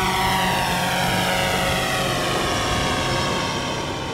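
Quadcopter drone hovering overhead, its propellers giving a steady multi-tone whine that drifts slowly down in pitch.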